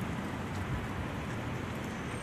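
Steady outdoor background hiss with no distinct event, a pause between stretches of talk.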